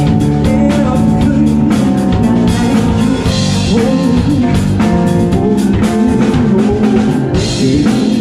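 Live band playing: drum kit, electric bass guitar and keyboard, with cymbal crashes about three seconds in and again near the end.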